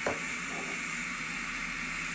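Steady, even white-noise hiss that begins abruptly and holds level without change.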